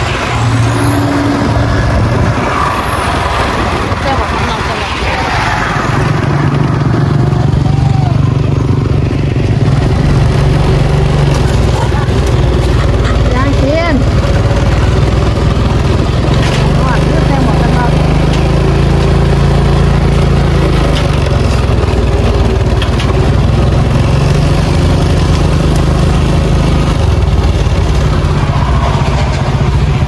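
Engine of a motor vehicle running steadily as it travels along a road, its pitch stepping up and down with speed changes. Rushing wind and road noise are heaviest in the first few seconds.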